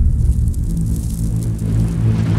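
Deep, steady low rumble and drone of a cinematic sound-design intro, its energy almost all in the bass with a few held low tones.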